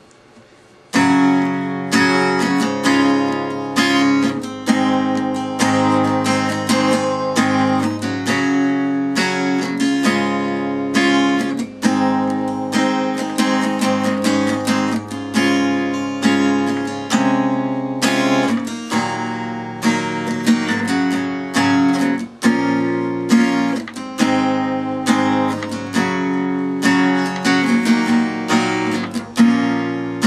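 Acoustic guitar, tuned a half step down, strumming a chord progression (the song's chorus) in a steady rhythm. It starts about a second in.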